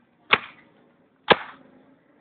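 Two sharp lashes of a penitent's whip striking a person's back, about a second apart, in a steady once-a-second rhythm of flagellation.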